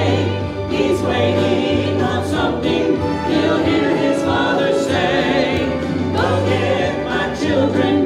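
Choir singing a gospel song with instrumental accompaniment and held bass notes.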